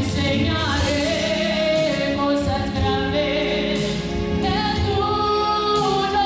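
A woman singing a gospel worship song through a microphone over musical accompaniment, holding long notes.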